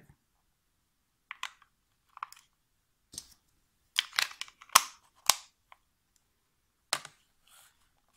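Scattered plastic clicks and knocks from a TV remote being handled, as its battery cover is slid back on and snapped shut, with two sharp clicks near the middle.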